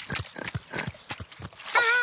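Cartoon sound effects: quick, light clicking footsteps as the animated flamingo steps along. Near the end comes a short, loud, wavering vocal cry from a character.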